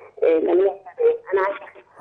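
A woman's voice coming over a telephone line, thin and cut off above the upper mids, in short broken phrases that are hard to make out: a poor mobile network connection.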